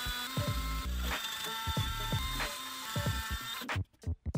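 A DeWalt cordless drill with a quarter-inch bit boring holes into a wooden board. Its motor whine holds steady, then stops suddenly near the end. Background music with a beat plays underneath.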